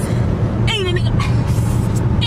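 Steady low road and engine drone inside a moving car's cabin. A woman gives a brief high-pitched exclamation a little under a second in.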